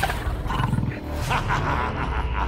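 A growling, roaring monster voice over a low droning music bed.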